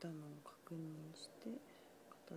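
Speech only: a person talking in short phrases with brief pauses.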